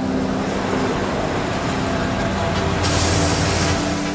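A box truck drives slowly past, its engine and tyres running steadily. About three seconds in comes a hiss lasting roughly a second.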